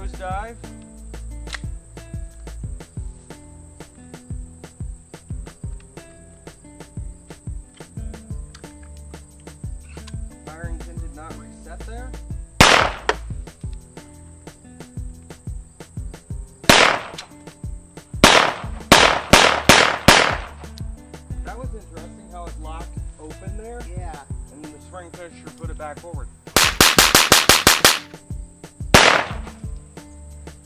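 Hi-Point C9 9mm semi-automatic pistol firing Pyrodex black-powder loads. There is a single shot, another a few seconds later, then five shots in quick succession, and near the end a dense rapid run of sharp cracks followed by one more shot. Pauses between shots come as the heavily fouled pistol starts to get sluggish and nosedives rounds.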